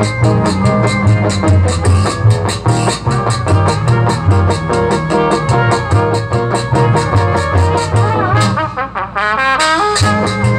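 A live jazz band playing: trumpets and saxophone over strummed guitar, violin and a steady drum beat. Near the end the beat briefly drops away under a wavering, rising solo line before the full band comes back in.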